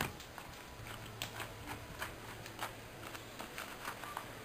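Faint scuffling from two people grappling on a dirt yard: a handful of light taps and rustles from feet and clothing.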